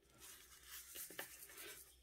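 Near silence: room tone with faint soft rustling and a light tick a little past a second in, from hands handling a small plastic cup of sugar.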